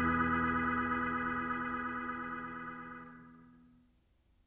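Background music: a single held organ chord fading out, gone just before the end.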